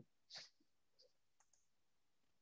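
Near silence, broken by a few faint, brief clicks: one about a third of a second in and two smaller ticks around the middle.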